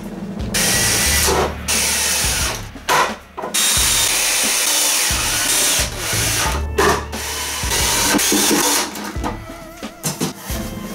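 Cordless drill driving screws into wooden boards, running in several bursts of a second or two each with short pauses between.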